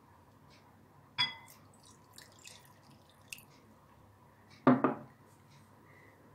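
Glassware clinking and knocking on a tabletop: one ringing glass clink about a second in, a faint tick later, and a pair of heavier knocks near the end.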